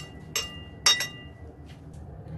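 Metal spoon clinking against a porcelain plate: about four sharp clinks within the first second, each ringing briefly, the loudest near the end of that run.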